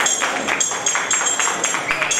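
Thiruvathira dance accompaniment: a quick, even beat of sharp strikes, about four or five a second, with a bright metallic ring, keeping time for the dance.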